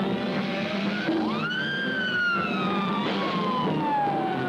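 Cartoon soundtrack music, over which a whistle-like sound-effect tone swoops up about a second in and then slides slowly down in pitch for several seconds.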